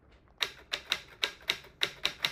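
Computer keyboard typing: a run of sharp key clicks, about four a second, starting about half a second in.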